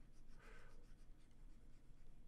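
Faint scratching and tapping of a stylus on a drawing tablet's screen during erasing strokes.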